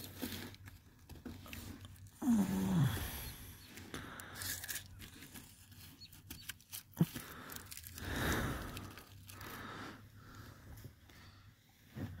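Rustling, crinkling and scraping of a hand groping down the gap beside a fabric car seat, with scattered small clicks and one sharp click about seven seconds in.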